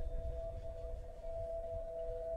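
Live jazz band holding a quiet sustained chord, two steady tones ringing on with a low rumble beneath.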